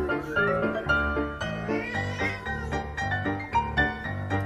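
Background piano music with a cat meowing over it: two drawn-out calls, one rising right at the start and another about two seconds in.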